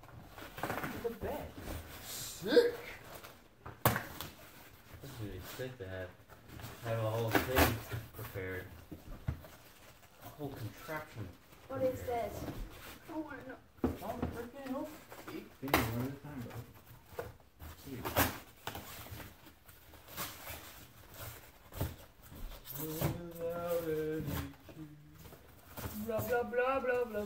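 Indistinct talking in a small room, broken by a few sharp knocks and rustles as a large cardboard box is handled and opened.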